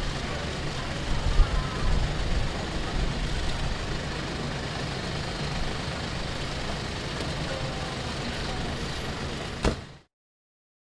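Street traffic noise with a vehicle engine running close by, steady and low, louder for a moment about a second in. A single sharp knock comes just before it cuts off.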